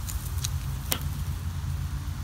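Sausages sizzling faintly over charcoal on an open kettle grill, with a few sharp clicks, the strongest about a second in, from metal grill tongs. A steady low rumble runs underneath.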